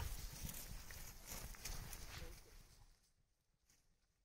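Faint rustling and footfalls of a small herd of cattle walking through tall grass, fading out to silence about three seconds in.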